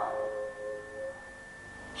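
Steady, pure sustained tones: a high one held throughout, and two lower ones that fade out within about the first second, so the sound grows quieter.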